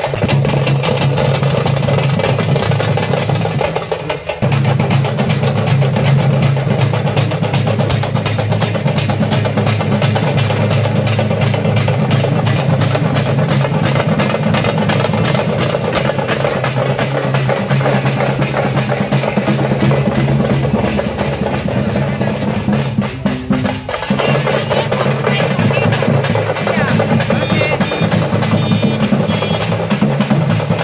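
Loud, fast, continuous drumming for kavadi dancing, dense rolling strokes over a steady low tone. It breaks off briefly about four seconds in and again around 24 seconds, then resumes.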